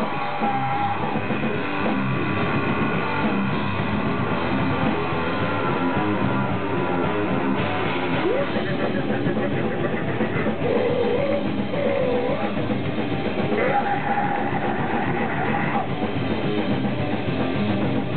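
Live grindcore band playing: loud distorted electric guitar and drum kit, with a vocalist at the microphone, steady and dense throughout.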